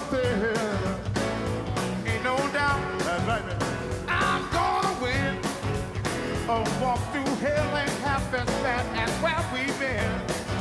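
A live rock band playing, with a man singing lead over keyboards and a steady drum beat.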